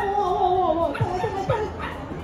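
A dog whining: one long, slightly falling cry for about the first second, then shorter yelping cries, over the chatter of a large hall.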